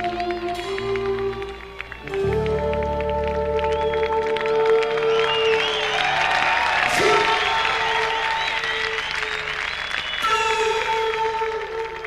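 Live progressive rock band playing, with held keyboard chords and a concert flute over them, a deep bass chord coming in about two seconds in. The audience cheers and applauds in the middle.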